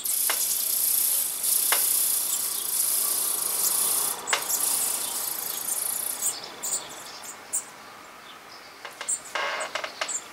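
European robin nestlings begging: a loud, high hissing chorus for about six seconds while a parent comes to feed, then fading. A short creaking burst of begging comes again near the end.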